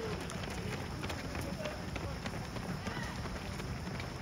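Many runners' shoes striking a paved path as a pack of racers passes close by: a dense, irregular patter of overlapping footfalls, mixed with people talking.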